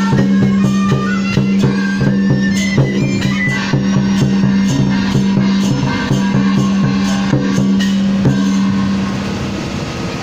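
Traditional Chinese band music: bamboo flutes play a melody over a steady low drone, a regular drum beat of about three a second and sharp percussion strikes. The music dies away about eight or nine seconds in.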